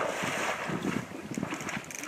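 Splashing of an angler in waders striding fast through shallow river water, loudest for about the first second and then easing off.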